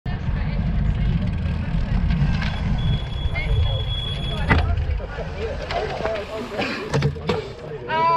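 A low rumble for about the first four and a half seconds, then the murmur of cyclists' voices chatting at a race start line.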